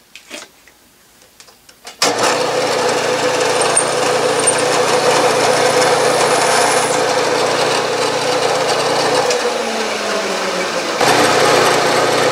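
Milling machine spindle running as a center drill cuts into an aluminum casting: a steady machine hum that starts suddenly about two seconds in, after a few faint clicks. Near the end the sound steps up slightly louder as a long 15/64 drill bores the pilot hole.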